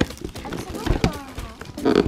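Voices in the room over the knocks and rustle of a cardboard camera box being unpacked by hand, with a sharp knock about a second in.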